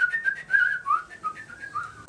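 A person whistling a short tune: one pure note rising into a quick run of short notes that wander up and down.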